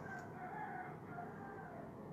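Faint bird call: one long drawn-out note with a wavering, stepping pitch, lasting about a second and a half.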